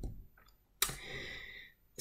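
A single sharp click about a second in, as of a computer key or mouse pressed to advance a presentation slide, followed by a faint hiss.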